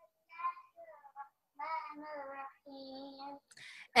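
A child's faint voice chanting a line of Quran recitation in a sing-song way, in short phrases, thin and distant as if coming through a video call. A short hiss follows near the end.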